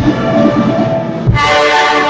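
Student brass marching band of trumpets, trombones and sousaphones playing loud held chords. The chord breaks off briefly just after a second in, then comes back in on a low drum beat.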